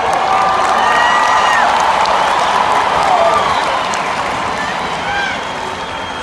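Stadium crowd cheering and applauding, swelling over the first few seconds and then easing off, with shouts from voices close by.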